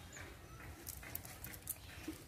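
Faint handling sounds from a cast net being picked through by hand on leaf litter: a low rustle with a few light, scattered clicks.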